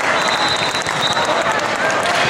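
Hand clapping and cheering voices from players and spectators as a volleyball rally ends and the point is won.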